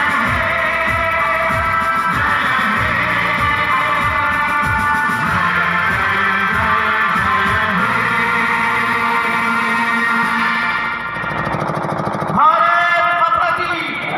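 A song with singing and a steady drum beat plays loudly, then stops about eleven seconds in. Near the end, voices shout together in a loud burst.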